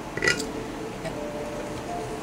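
Tarot cards being handled and the deck split in two, with a brief soft rustle of cards a fraction of a second in, then quiet room tone.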